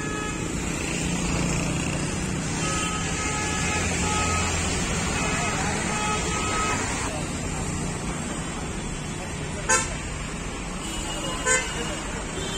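Roadside traffic noise: a steady hum of passing vehicles, with two short horn honks near the end, about two seconds apart.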